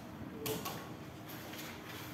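Quiet classroom ambience: steady room noise with a few faint short scrapes and clicks, the loudest about half a second in.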